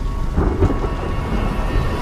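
Thunder rumbling low and continuously, with a louder swell about half a second in.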